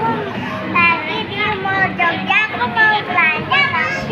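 Children's voices chattering, with no clear words.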